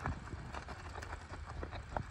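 A horse walking on sand: faint, irregular hoof knocks and clicks, the clearest near the end, over a steady low rumble.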